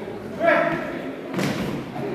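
A shout about half a second in, then a single sharp thud about a second later, as a judo bout gets under way on the mat.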